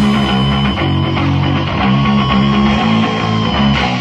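Rock band playing the instrumental lead-in of a song: an electric guitar riff over bass, with no vocals.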